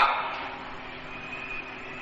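Steady background hum and hiss with faint held tones, filling a pause in a man's talk.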